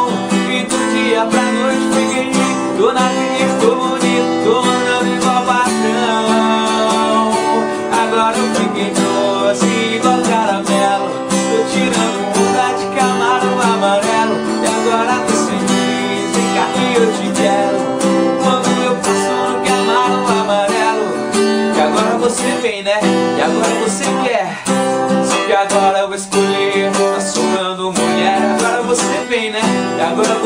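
A man singing while strumming an acoustic guitar, a solo voice-and-guitar performance.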